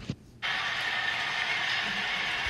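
Soundtrack of a football highlight video playing back on a tablet, cutting in after half a second of near silence as a steady, even wash of noise.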